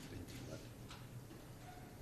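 Quiet room tone of a large chamber: a steady low hum with a few faint, short clicks and rustles.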